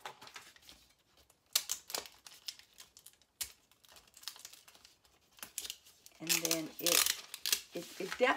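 Infusible Ink transfer sheet crackling and crinkling as it is bent and peeled apart by hand during weeding, a run of scattered sharp cracks and rustles; the cut ink sheet cracks rather than stretches as the pieces break off. A short stretch of voice comes in about six seconds in.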